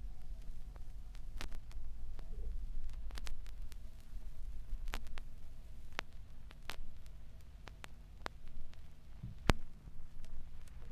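Record surface noise with no music: irregular sharp clicks and pops over a steady low rumble, with one louder pop near the end.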